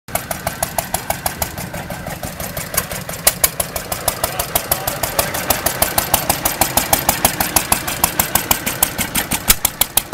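Antique stationary gas engines running belt-driven machinery, with a sharp, steady clicking about seven times a second over the running noise.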